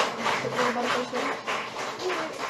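Audience applauding, the claps coming fast and fairly even, with a few voices mixed in.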